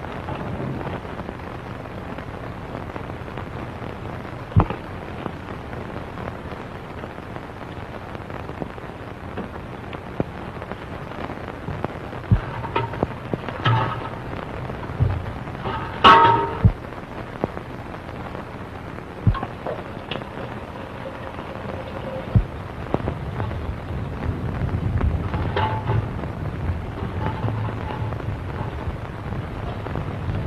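Steady hiss and crackle of an early-1930s optical film soundtrack, with scattered clicks and a low hum. A few brief, faint pitched sounds come through around the middle and again near the end.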